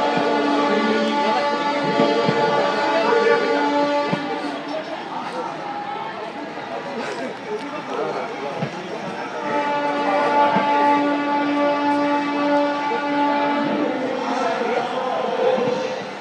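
Train horn sounding two long, steady blasts, one in the first few seconds and another from about ten to fourteen seconds in, over voices and crowd noise from the platform.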